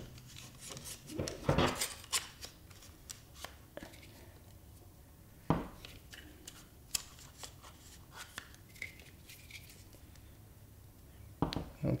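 Scattered clicks and knocks of a Steadicam Merlin 2 stabilizer being handled as the camera is slid back on its stage and the rig is lifted and swung. The loudest knocks come about a second and a half and five and a half seconds in.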